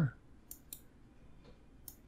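Three computer mouse clicks: two close together about half a second in, and one near the end.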